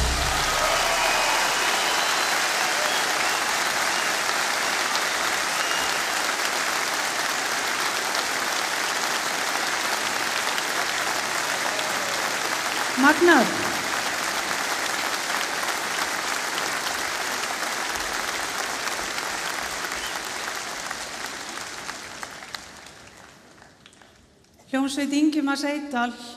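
A large concert audience applauding steadily after a song, with one short rising call from the crowd about halfway through. The applause dies away over the last few seconds.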